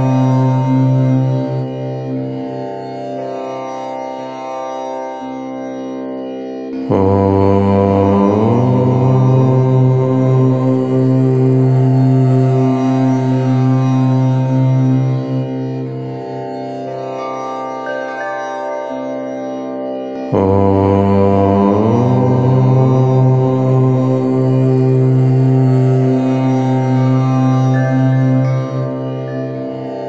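A deep voice chanting long, drawn-out "Om" tones, each held for several seconds. A fresh chant starts about 7 seconds in and again about 20 seconds in, brightening as it opens, then falls back to a quieter held tone.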